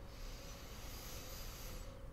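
A person taking one slow, deep breath in during a held neck stretch, a soft hiss of air that stops just before two seconds.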